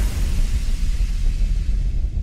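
Outro sound effect: the deep rumble of a cinematic boom, held low and loud while its upper hiss fades away.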